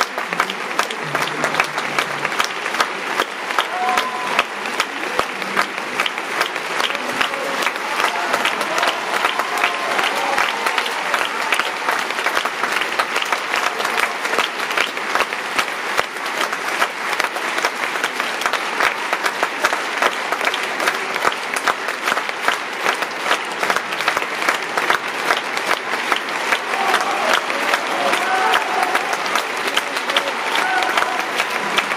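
Large theatre audience applauding steadily, dense clapping that never lets up.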